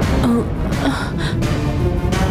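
Dramatic television-serial background score, dense and heavy in the low end.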